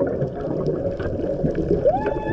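Muffled underwater noise picked up by a camera in its housing on a reef dive: a steady low wash with a few faint scattered clicks.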